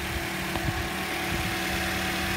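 Toyota Corolla's four-cylinder engine idling steadily, just after a remote start, with a brief tap about two-thirds of a second in.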